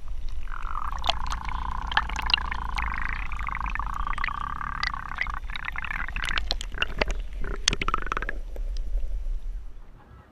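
Water sloshing and gurgling around a camera held at and just under the lake surface, with many small splashes and clicks; it dies away near the end.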